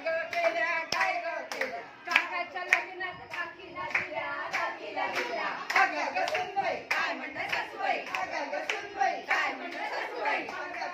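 Hand clapping in a steady rhythm, about two claps a second, with women's voices going on over it during a group game.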